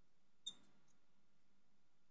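Near silence, broken once about half a second in by a brief high squeak of a marker on a glass writing board.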